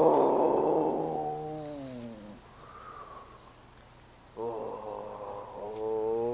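A person sitting in an ice bath groaning. The first groan is loud and breathy and falls in pitch over about two seconds. After a short pause a second drawn-out moan starts and rises in pitch.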